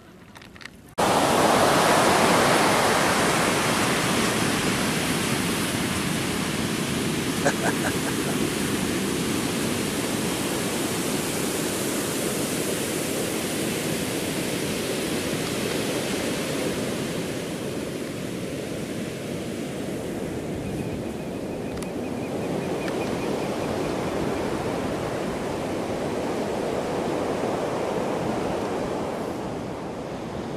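Ocean surf breaking and washing up a sandy beach: a steady wash of waves that cuts in suddenly about a second in and swells and eases slowly.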